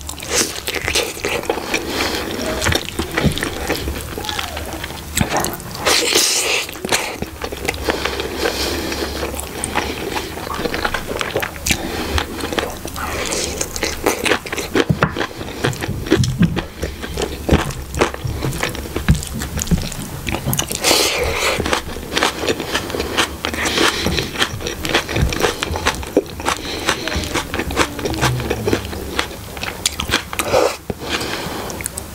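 Close-miked chewing and wet mouth sounds of eating chicken curry and rice by hand, with fingers squishing rice in gravy and sharper crunches now and then.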